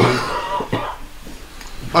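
A person coughing once, briefly, near the start.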